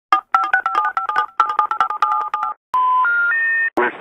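Touch-tone telephone keypad being dialled: a quick run of short two-note beeps. About two and a half seconds in come three rising tones, the special information tone of a telephone intercept, the signal that the number dialled is not in service.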